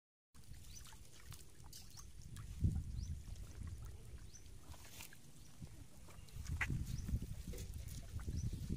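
Many fish thrashing and flopping in shallow muddy water, making a scatter of small splashes and slaps, with heavier, lower splashing about two and a half seconds in and again from about six and a half seconds.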